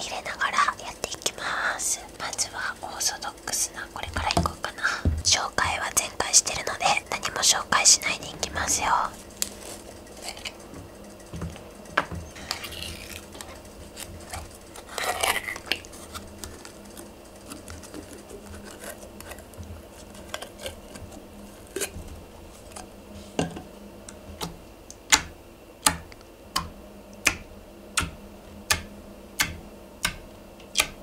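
Glittery orange Seria slime being handled on a wooden tabletop, sticky and wet. In the last few seconds a fingertip presses into it repeatedly, each press giving a sharp sticky pop, about three every two seconds.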